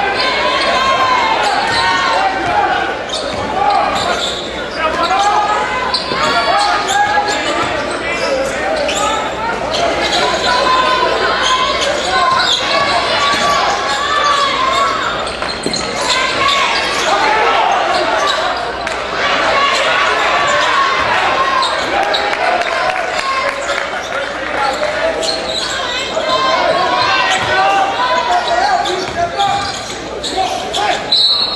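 Basketball being dribbled on a hardwood gym floor during play, with spectators talking throughout in the reverberant hall.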